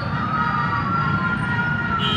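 Emergency vehicle siren wailing, one long tone that slowly rises in pitch and begins to fall near the end, over a steady low rumble.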